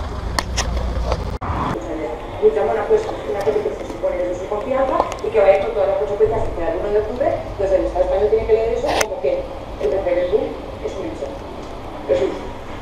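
A low street rumble of traffic for the first second or so, then people talking, with a sharp click near nine seconds.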